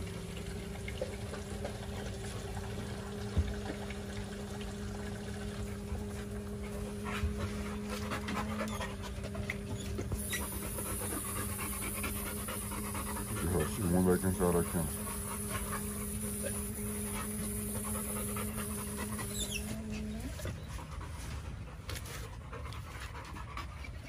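Garden hose running into a dog's water bowl: a steady low humming note from the running hose and spigot stops about twenty seconds in, with a splashing hiss in the middle stretch. Dogs panting, and a short dog whine around the middle.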